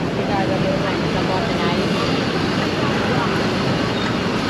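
Busy street-market ambience: a steady din of traffic noise and crowd chatter, with scraps of nearby voices.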